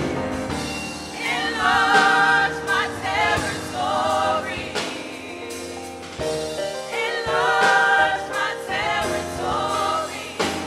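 Small gospel choir of five women singing live in harmony, the sung phrases swelling and breaking every second or two with wavering vibrato on the held notes.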